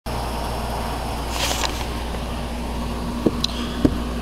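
A steady low mechanical hum with a faint constant tone in it, broken by a short hiss about one and a half seconds in and two sharp clicks near the end.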